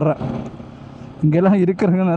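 A man talking, with a pause of about a second in which only faint wind and road noise from the moving motorcycle is heard.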